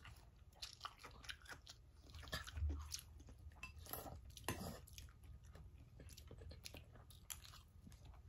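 Close-up eating sounds: chewing and crunching of green mango salad and stir-fried noodles, in short, irregular crunches and mouth sounds, with one louder crunch about four and a half seconds in.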